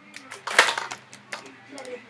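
Hard plastic clicks and knocks from a toy Nerf dart blaster being handled and lifted. There are a few sharp clicks, the loudest about half a second in and two smaller ones later.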